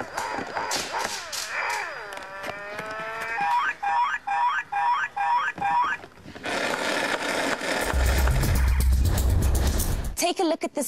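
Electronic sounds and jingles from a battery-operated toddler's toy steering-wheel dashboard as its buttons are pressed: gliding tones, then a quick run of about eight chirping beeps. From about six seconds in, a rush of noise with a heavy low beat takes over.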